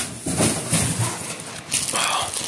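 Clear plastic wrap crinkling and rustling as a boxed scale is handled and turned.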